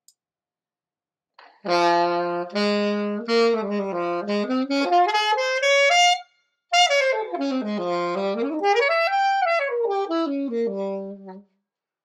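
Saxophone played on a new reed that is still being broken in. After a short silence, a phrase climbs note by note. Then, after a brief pause, a line falls, rises and falls again, ending on a held low note.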